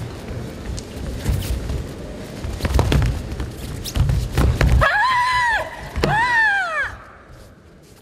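Bare feet thudding on the competition mats with sharp knocks of contact as two karateka exchange techniques. Then come two high-pitched shouts of under a second each, rising and then falling in pitch: a woman's kiai.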